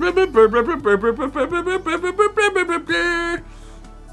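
A quick tune of short, distinct pitched notes, several a second, ending on one held note that stops abruptly.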